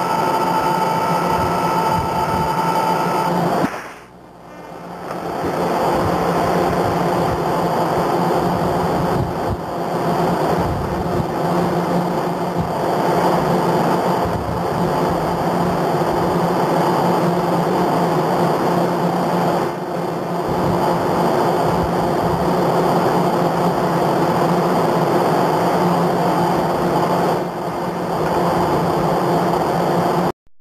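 Steady rush of wind and churning sea on an open ship's deck, with a low steady machinery hum underneath; the level drops briefly about four seconds in.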